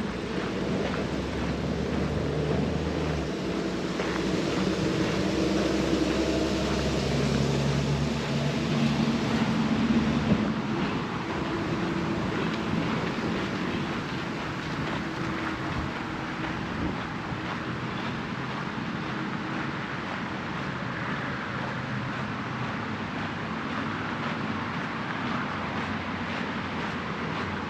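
Outdoor ambience with an engine hum from passing motor traffic that swells over the first ten seconds and then fades, over steady background noise and the light crunch of footsteps on a gravel path.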